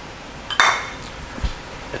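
A glass coffee mug clinks once against another hard surface about half a second in and rings briefly, followed by a soft knock.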